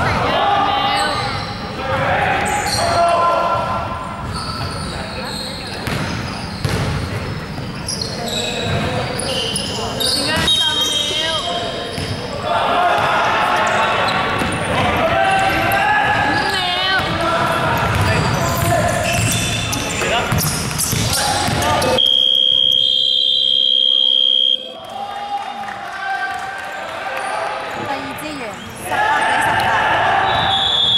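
Basketball game on a wooden indoor court in a large, echoing hall: the ball bouncing, sneakers squeaking and players calling out. About 22 seconds in, a steady high tone sounds for about two and a half seconds.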